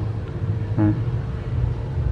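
A low, steady rumble with a faint steady hum above it. A man says a short "à" about a second in.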